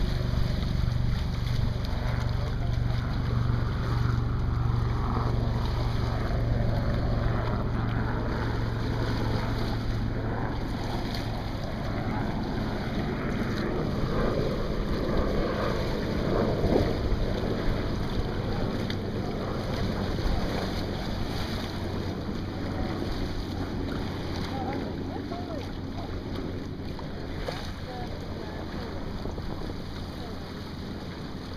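Wind on the microphone and water washing along the hulls of a small sailing catamaran under way, with a low steady hum for roughly the first ten seconds.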